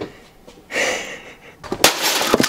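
Sledgehammer smashing a plastic inkjet printer: a sharp crack near the end, after a brief rushing noise about a second in.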